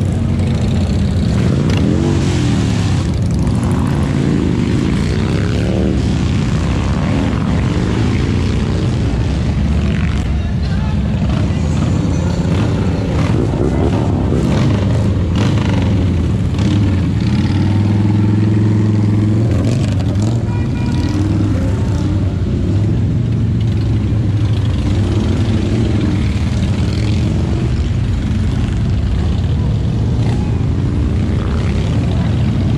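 A parade of large cruiser and touring motorcycles, trikes among them, riding past one after another, their engines running on without a break. The engine pitch rises and falls as the bikes go by, and it is loudest about eighteen seconds in.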